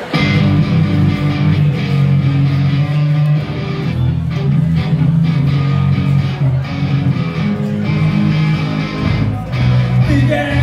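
Live rock band of electric guitars and drums starting a song together, loud and driving from its sudden first beat.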